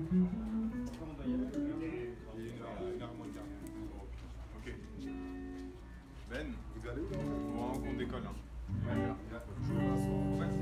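Guitar being played, with plucked and strummed notes, while people talk in the room.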